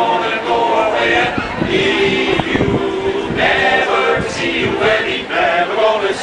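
Men's barbershop chorus singing a cappella, many voices in close four-part harmony.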